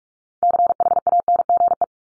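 Computer-generated Morse code at 45 words per minute: a single-pitched beep keyed rapidly on and off in dots and dashes for about a second and a half, starting about half a second in. It spells out the word "change" before it is spoken.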